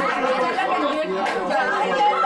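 Several people talking over one another in a room: general chatter.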